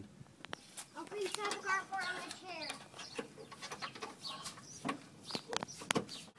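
A bird calling several times in short pitched calls, with scattered sharp clicks from hand tools being handled.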